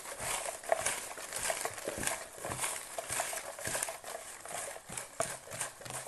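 Hands rummaging through a box of folded paper slips: a continuous rustle and crinkle of paper, broken by many small irregular clicks and taps as slips are picked out and set down on the table.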